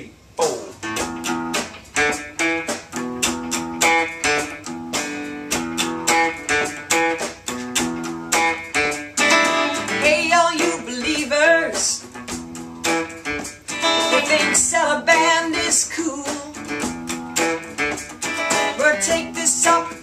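An archtop guitar playing chords in a steady rhythm, with a woman singing over it from about nine seconds in.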